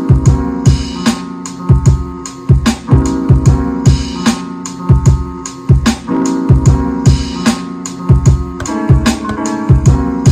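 Hip hop beat playing from an Akai MPC One sampler: a pattern of punchy low kick-drum hits a fraction of a second apart, with snare hits, over steady held chords.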